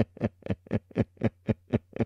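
A man laughing helplessly in a steady run of short 'ha' pulses, about four a second.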